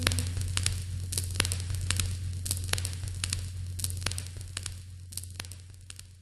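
Irregular crackling clicks over a steady low hum, fading out as the song on the soundtrack ends.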